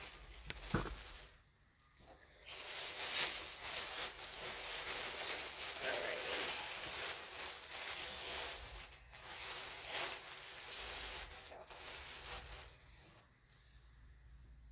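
Plastic gift bag crinkling and rustling as it is pulled open and handled, a continuous crackle of small sharp crinkles starting a couple of seconds in and dying away near the end.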